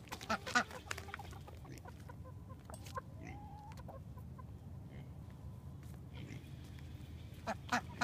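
Domestic chickens clucking faintly now and then: a few short scattered calls over a low, steady background rumble.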